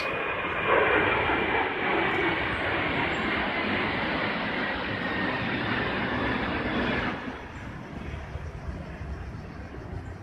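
Airplane passing low overhead: a loud, steady rush of engine noise with a faint whine that falls slightly in pitch during the first couple of seconds. It fades sharply about seven seconds in.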